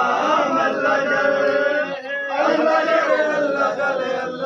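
A group of men chanting together in a loud, melodic mourning chant for Imam Hussain, with a brief break in the voices about two seconds in.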